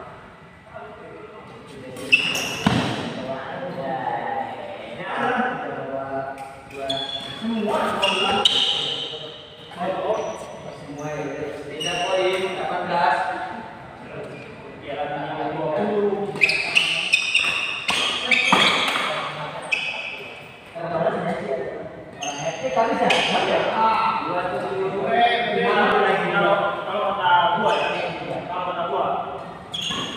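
People talking and calling out in the background, with sharp racket strikes on a shuttlecock at intervals during doubles badminton rallies.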